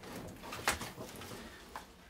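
Faint handling and movement noises over low room noise, with one sharp click about two-thirds of a second in.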